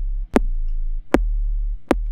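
Bass Machine 2.5's sub-bass synth in Ableton Live 11 plays deep notes, each opened by a sharp click from a layered click transient. The click is added to help the sub cut through and give it more impact. Three new notes start about 0.8 s apart.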